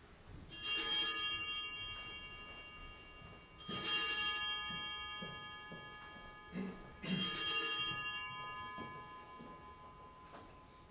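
Small altar (sanctus) bells rung three times at the elevation of the chalice, marking the consecration of the wine. Each ring is a bright shake of several high pitches that dies away over about two seconds.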